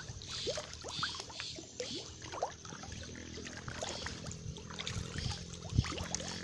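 Nile tilapia feeding at the pond surface on floating pellets: scattered small splashes and plops.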